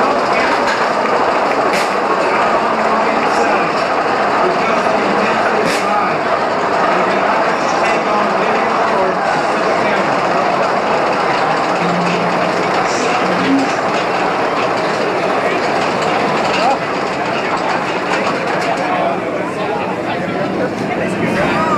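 Hurricane steel roller coaster trains running over the track, a steady clattering rumble with a few sharp clicks, over a crowd's voices.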